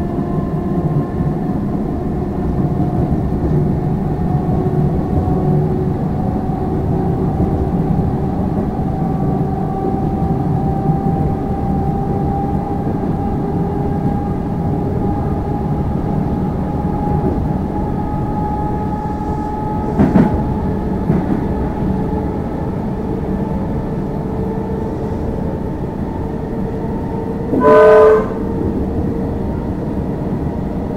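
Onboard running noise of an Alstom Comeng electric suburban train at speed: a steady rumble of wheels on track with a faint whine from the traction motors that rises slowly in pitch. A sharp knock about twenty seconds in, and a short train horn blast, under a second long, near the end.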